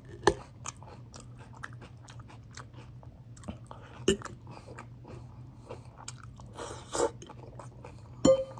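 A person chewing a mouthful of salad close to the microphone, with crisp crunches throughout. The sharpest crunches come just after the start and about four seconds in, and a longer crunch comes near seven seconds. A steady low hum runs underneath.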